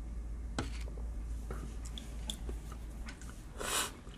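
Small sharp clicks and taps, with a short rush of breathy noise near the end, over a steady low hum in a small room.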